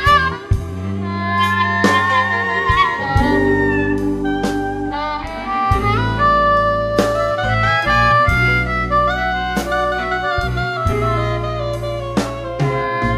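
Live blues band playing a slow instrumental passage: a lead melody with held, sliding and bent notes over a bass line and a drum beat of about one hit a second.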